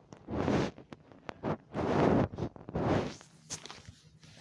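Rustling and handling noise as a phone is moved about against bedding: three swishes of about half a second each, with a few sharp clicks between them.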